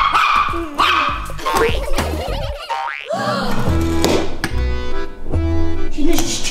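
Upbeat background music with a steady bass beat, with a rising cartoon-style sound effect about halfway through.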